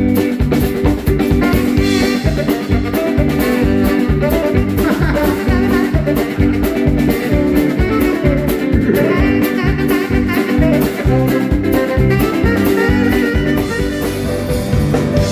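Live band music with a steady drum beat, bass and guitar, and a tenor saxophone playing.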